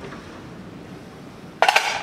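A short burst of metallic clinking and clattering near the end, as metal parts (a mower-deck gauge wheel and its bolt hardware) are handled and set down.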